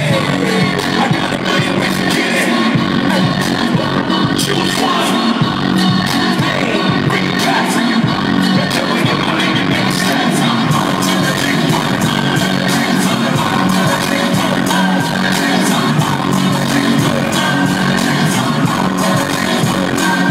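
Live concert music played loud over an arena sound system, with a steady beat.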